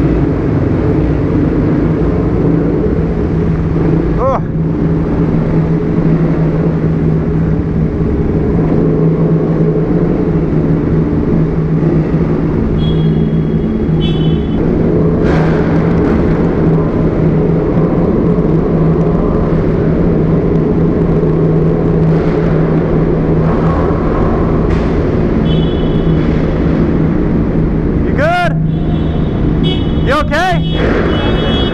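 Supermoto motorcycle engines running steadily at low speed inside a concrete drainage pipe, with a constant low engine drone. A few brief higher squeals or whines come near the end.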